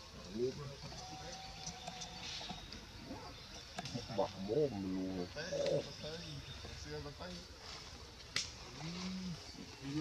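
Indistinct voices talking on and off, not in English, with a single sharp click late on.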